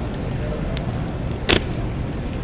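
Trading cards being handled over a steady low background rumble, with one sharp click about one and a half seconds in and a few faint ticks before it.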